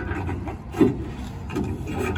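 Thin pages of a telephone directory being handled and leafed through, a dry paper rustling with one louder page flip a little under a second in.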